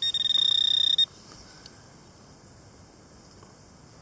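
A metal-detecting pinpointer probe sounding a steady, high electronic tone for about a second before it cuts off; a continuous tone means metal is right at the probe's tip.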